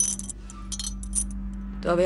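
Bangles clinking on a woman's wrist as she moves her arm: a cluster of light jingling clinks through the first second or so.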